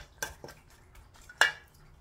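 Wooden spoon stirring salted radish strips in a stainless steel bowl, knocking against the bowl a few times, the loudest knock about one and a half seconds in.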